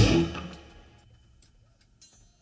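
A live rock band's final chord, from electric guitars, keyboard and drums, rings out and dies away within about a second, ending the song. After it there is near silence with a few faint clicks.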